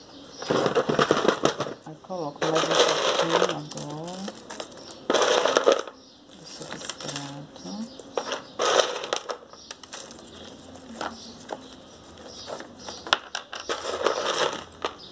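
Orchid potting mix of pine bark, gravel and broken roof tile being scooped by a gloved hand from a plastic basin and dropped into a wooden cachepot: several bursts of crunching and clattering, with scattered small clicks near the end.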